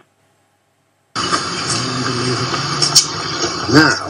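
About a second of dead silence, then a sudden switch to steady outdoor background noise with a low hum underneath and faint voices.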